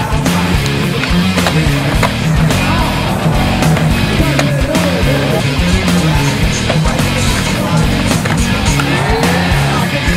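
Rock music with guitar, over skateboard sounds: urethane wheels rolling on concrete and the board knocking and clacking as it hits ledges and the ground.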